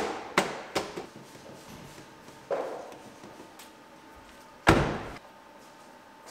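A few sharp knocks in the first second as the plastic rocker molding is worked against the sill, then a short rustle. Near five seconds comes a heavy thud, the car's front door shutting.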